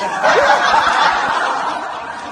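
Laughter, getting steadily quieter.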